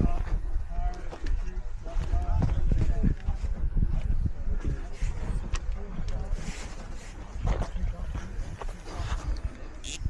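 Faint, indistinct voices over a low, uneven rumble, with scattered light clicks.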